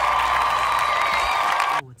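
A man's long, loud whoop, held on one high pitch, cut off abruptly near the end.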